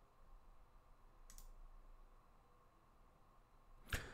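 Near silence with a faint click about a second in and a sharper click near the end.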